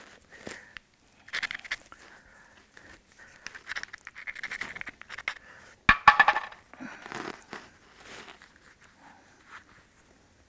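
Pieces of Georgetown flint clinking and scraping against each other as they are picked up and handled. About six seconds in comes a sharp stone-on-stone click, followed by a short rattle.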